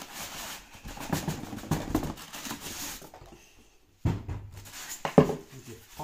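Cardboard box and polystyrene packing being handled and slid apart, with scraping and rustling for about three seconds. After a short pause comes a thump about four seconds in and a sharper knock about a second later.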